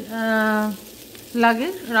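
A woman's voice holding one long vowel, then speaking again, over the faint sizzle of naan cooking on a nonstick tawa.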